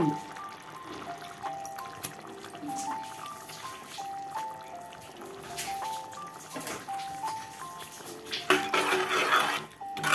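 Background music: a simple melody of short notes. Near the end, a louder rush of noise as a ladle goes into the curry in the aluminium pot.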